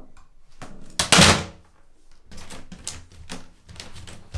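Handling sounds of a suction anti-slip bath mat being put into an empty acrylic bathtub and pressed down: a loud, short rush about a second in, then a series of separate knocks and taps.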